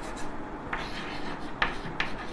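Chalk writing on a blackboard: scratching strokes that start just under a second in, with a sharp tap of the chalk about a second and a half in.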